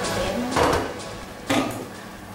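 Two short scraping, rustling knocks from a baking tray and its baking paper being handled: one about half a second in and a sharper one about a second later.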